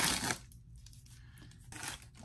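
Shipping mailer being torn open by hand: one loud rip that stops about half a second in, followed by faint rustling of the packaging.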